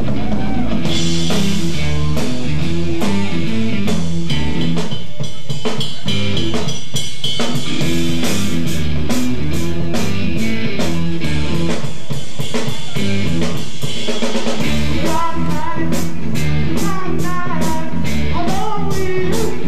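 Rock band playing live: electric guitars and drum kit, with steady drum hits and a moving bass line. A wavering melodic line comes in over it in the last few seconds.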